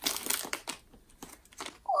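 A small foil blind-bag packet being torn open along its tear strip, crinkling, with a quick run of tearing crackles in the first part of the second and sparser crinkles after. It tears easily.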